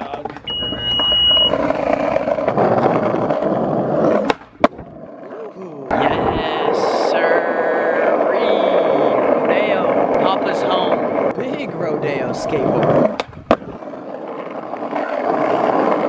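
Skateboard rolling on street asphalt: a steady wheel rumble that breaks off briefly about four seconds in and again near the end, resuming each time.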